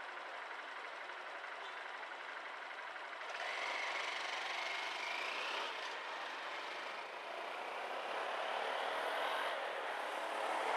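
Car engine idling at a street junction amid city traffic; about three seconds in the sound grows louder with a rising whine as a vehicle accelerates away.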